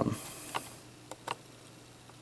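A brief high hiss, then three faint clicks over quiet room noise.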